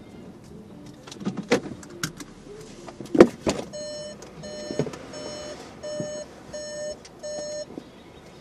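Several clicks and knocks, the loudest about three seconds in, then an electronic beeper sounding about seven short beeps, evenly spaced, somewhat under two a second, that stop near the end.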